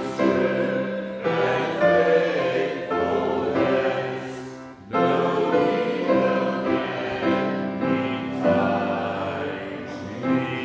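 Congregation singing a psalm in slow, sustained phrases, with a short break between lines about five seconds in.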